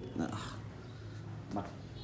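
Mostly speech: a voice says two short words, about a second and a half apart, over a steady low hum.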